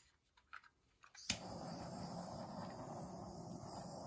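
Handheld butane craft torch clicked alight a little over a second in, then its flame hissing steadily.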